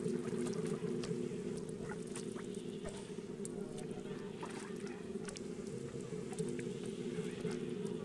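Pond water splashing and dripping as macaques swim and wade, small scattered splashes over a steady low background noise.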